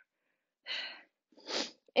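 A woman's two short, sharp breaths through the mouth, about two-thirds of a second apart, as she works through an abdominal crunch.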